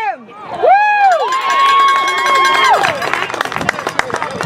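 A spectator's loud cheering yell: a short rising-and-falling shout, then one long held shout lasting about a second and a half, with crowd cheering and sharp clap-like clicks around it.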